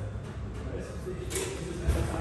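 Soft-sided vinyl tool case being handled and unzipped, with a short rasp about one and a half seconds in and a low thump near the end.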